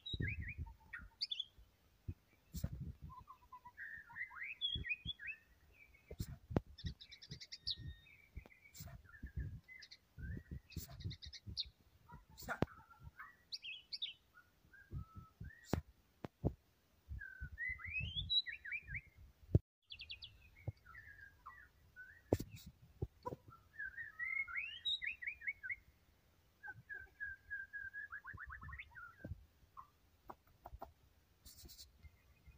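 White-rumped shama (murai batu) singing a varied song: a run of whistled phrases with rising and falling notes, fast trills and held notes, separated by short pauses. Scattered low knocks and clicks sound between the phrases.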